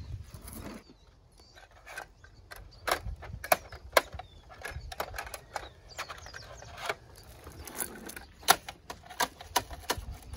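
Hard plastic clicks and knocks from a toy side-loader garbage truck being worked by hand: its lifting arm and the small plastic bins tapping and rattling in irregular single clicks, with a few louder knocks in the middle and near the end.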